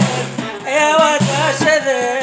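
A Tamazight (Berber) song: a man singing sustained, wavering melodic lines over steady instrumental accompaniment.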